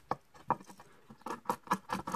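A small multitool blade scraping and shaving a charcoal briquette: an irregular run of short, scratchy clicks that comes faster near the end.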